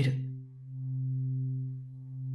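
Low sustained drone of an ambient background music bed, a few steady low tones held together that swell a little and then fade.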